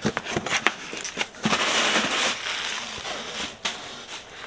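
Packaging being handled in a cardboard box. A few sharp clicks and taps are followed by a burst of crinkling and rustling about halfway through, as a wrapped item is pulled out.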